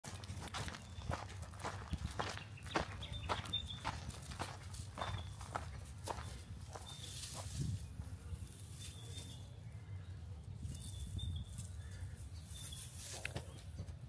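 Footsteps on a dry dirt and gravel track at a steady walking pace, about two steps a second, thinning out in the second half.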